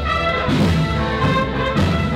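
Municipal wind band playing a Spanish processional march, the brass carrying the melody over sustained low bass notes, the notes changing about every half second.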